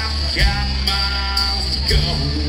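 Live country band playing with guitars, bass, drums and pedal steel guitar, heard through a loud room mix. Two louder accents come about half a second in and near the end.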